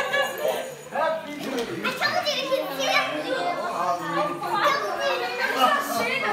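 Several children's voices talking and calling out excitedly over one another, mixed with adult chatter, with no single voice standing out.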